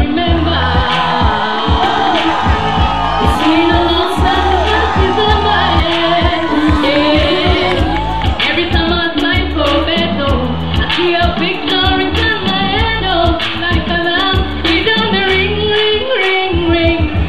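A woman singing into a microphone over loud amplified music with a heavy bass beat, played through a stage PA system.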